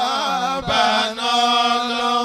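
Male voice chanting an Islamic devotional chant; the melody wavers at first, then settles into long held notes.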